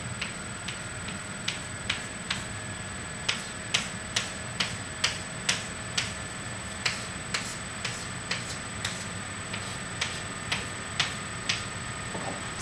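Chalk tapping on a chalkboard, making tick marks along a graph's axes: short sharp knocks about two a second, with a brief pause about three quarters of the way through.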